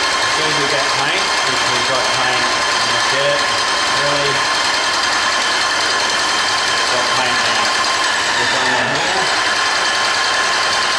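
Airless paint sprayer's pump running steadily, with a constant whine, while paint is pushed through the spray gun into a bucket to flush the old material out of the line and prime it.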